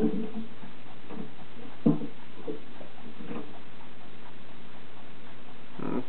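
Steady hiss of the recording with a few faint short sounds over the first three and a half seconds, the loudest a sharp click about two seconds in.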